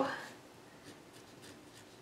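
Pencil scratching on paper in faint, short strokes as an equation is written out.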